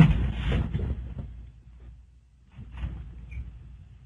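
A man's short laugh, fading out over about the first second. After it comes low background noise, with a faint brief noise around three seconds in.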